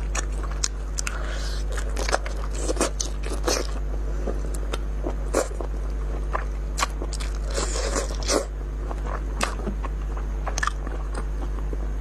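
Close-miked eating: a person biting and chewing food, with many short sharp cracks scattered through and a few louder ones, over a steady low electrical hum.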